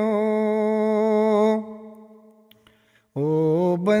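A single voice singing a Punjabi devotional shabad holds a long 'o' on one steady note, which fades away about a second and a half in. After a short near-silent pause, a new 'o' begins near the end, sliding up in pitch.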